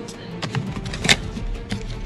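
A cardboard humidifier box being handled and opened: a few sharp clicks and taps, the sharpest about a second in, over background music.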